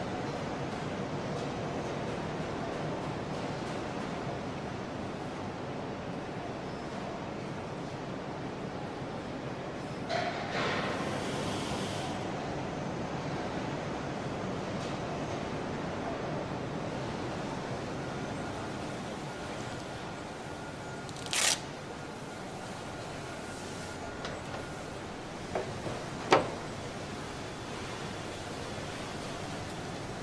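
Steady background noise with a few short, sharp knocks or clicks, the loudest a little over two-thirds of the way through.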